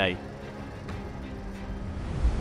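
Steady outdoor street noise with a low vehicle hum underneath, a faint even background without distinct events.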